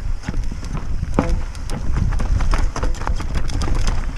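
Mountain bike clattering over rocks on a descent: irregular knocks and rattles from tyres, chain and frame, over a steady low rumble. The rider calls the line through this rough section a bad one.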